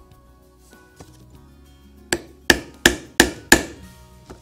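Five sharp hammer blows on a rivet setter, about three a second, setting a metal rivet through a leather dog collar held on a small anvil.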